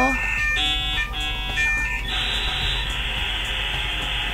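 Dial-up modem connecting: a run of shifting electronic tones and screeches that change every half second or so, then, about two seconds in, a steady harsh hiss of the handshake that carries on. The girl hearing it calls it really bad.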